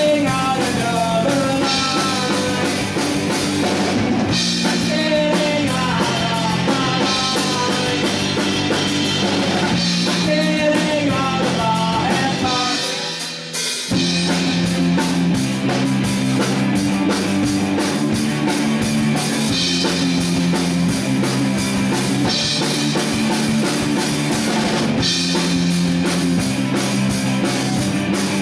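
Live rock band of electric guitar, bass guitar and drum kit, with a male singer over the first half. About halfway through the band briefly drops out, then comes back in playing without vocals.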